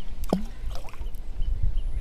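A stone dropping into lake water: a single short plunk with a falling tone about a quarter second in, over a steady low rumble.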